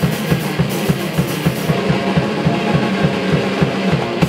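Hardcore punk band playing live at full volume, driven by a fast, even drum beat. Cymbals crash through the first second and a half or so.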